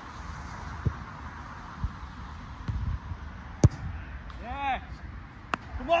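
A few dull thuds of a football being kicked on grass, the loudest about three and a half seconds in, over steady wind on the microphone. A man shouts a short call near the end.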